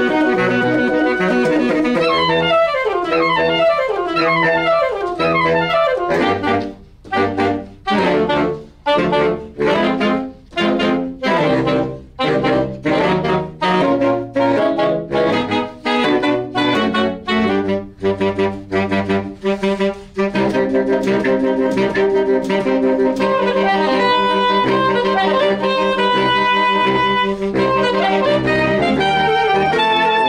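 Saxophone quartet playing in harmony. It opens with held chords and falling runs, goes into a long stretch of short, detached notes with brief gaps between them, and returns to sustained chords about two-thirds of the way through.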